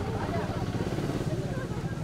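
Steady low rumble of a vehicle engine running close by, with faint voices from the crowd over it.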